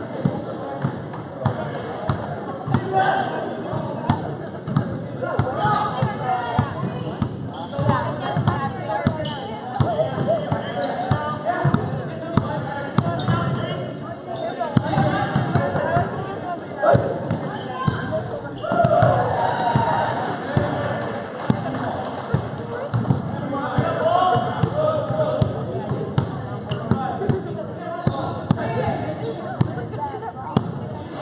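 Basketball bouncing repeatedly on a hardwood gym floor during live play, over a steady murmur of spectator chatter in an echoing gymnasium.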